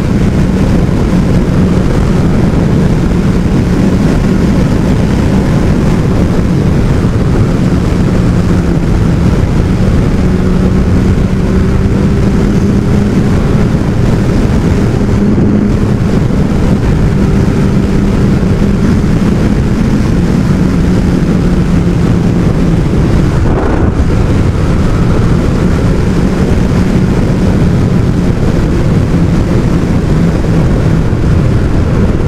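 2005 Kawasaki ZX12R's inline-four engine running steadily at cruising speed, with wind rush over the microphone.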